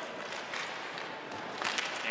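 Ice hockey arena ambience during play: a steady crowd murmur with a few faint clicks from sticks and puck on the ice.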